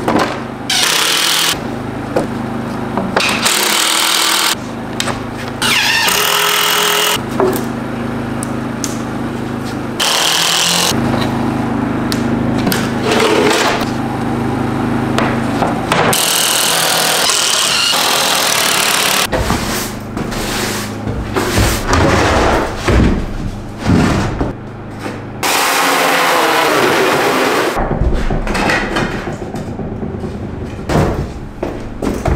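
Cordless power tools, chiefly an impact driver, running in short bursts as screws are driven into plywood and 2x4 framing, cut together in quick succession. In the last third this gives way to a rapid run of knocks and scraping.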